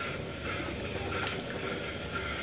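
Green grapes tipped off a plate into a pot of hot sugar water on a gas stove, over a steady rushing hiss.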